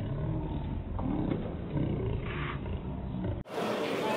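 Muffled low rumble and murmur of onlookers around a pool table, with a sharp click about a second in.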